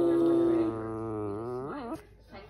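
A long, wavering hum-like voice, one pitched tone held throughout with its pitch dipping and rising, loudest at the start and cutting off just before the end.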